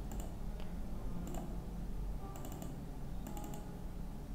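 Computer keyboard typing: small clusters of a few keystrokes about once a second, over a low steady hum.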